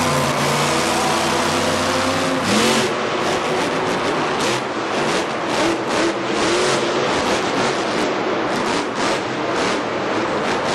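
A vehicle engine running loudly, its note shifting and revving about two and a half seconds in, then continuing as a rough, surging engine noise.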